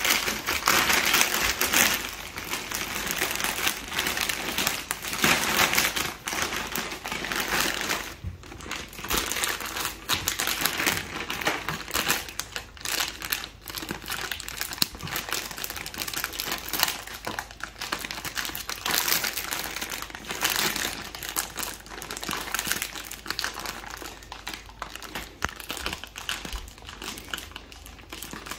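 Clear plastic travel compression bag crinkling and rustling in irregular bursts as bulky clothes are pushed into it and its zip-lock seal is pressed shut, busiest in the first couple of seconds.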